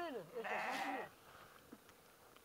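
Bleating from a flock of sheep and goats: a short call at the start, then one longer, quavering bleat about half a second in.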